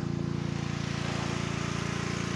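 The engine of a motor pump (motopompe) runs at a steady speed, an even drone with a fast regular pulse, while it pumps irrigation water.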